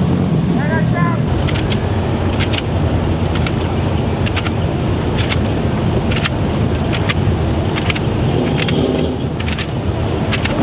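Low steady rumble of idling engines with sharp clicks roughly once a second and faint voices.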